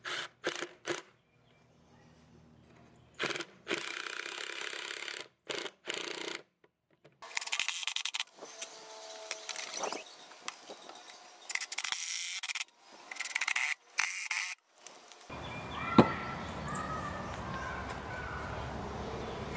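Cordless drill-driver driving galvanized roof screws through an aluminum strip into a pine 2x4, in a series of short bursts of about half a second to two seconds, one with a rising whine. Near the end the background steadies, with one brief sharp sound.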